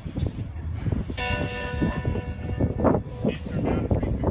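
A short horn blast, a steady chord of several tones lasting under a second, heard about a second in over low outdoor rumble and faint voices.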